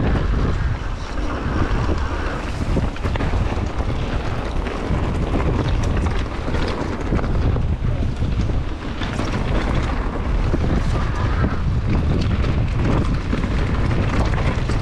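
Wind buffeting the action camera's microphone over the rumble of an electric mountain bike's tyres on a dirt singletrack, with frequent small clicks and rattles from the bike as it rides over the rough ground.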